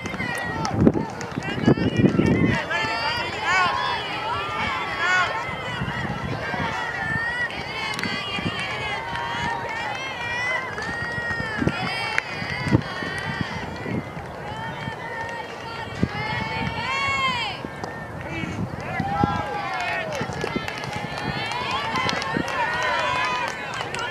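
Many overlapping voices calling out and chattering, mostly high-pitched, from players and spectators at a softball game; no single voice stands out.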